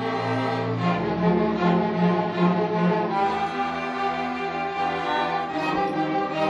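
School orchestra of violins, cellos and double bass playing held notes, the chord changing about a second in and again about three seconds in.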